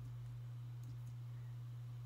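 Steady low hum in the recording's background, with a couple of faint clicks about a second in.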